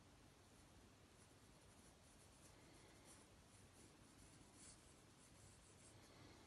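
Faint scratching of a pencil sketching light curved lines on sketchbook paper, in a run of short strokes.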